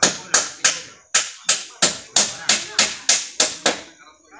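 A hammer striking in a quick, steady series of about a dozen sharp blows, roughly three a second, with a brief pause about a second in.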